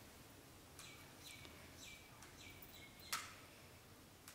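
Near silence, with about five faint, high chirps that fall in pitch during the first three seconds and one short, sharp click about three seconds in.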